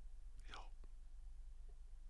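Quiet room tone with a low hum in a lull between speakers. About half a second in there is one faint, short breath-like hiss, followed by a soft click.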